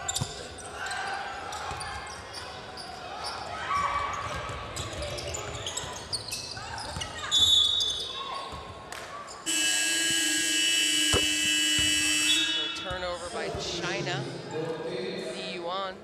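Basketball game sound in an arena: a ball dribbling and shoes on the hardwood, then a referee's whistle about seven and a half seconds in, followed by the arena horn sounding for about three seconds as play stops.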